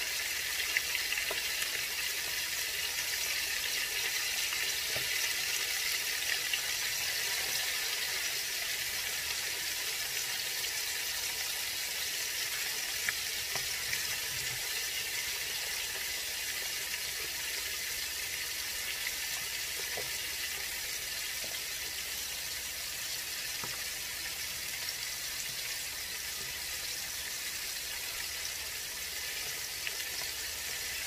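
Breaded chicken pieces frying in hot oil in a cast iron skillet: a steady sizzle with a few faint crackles and clicks.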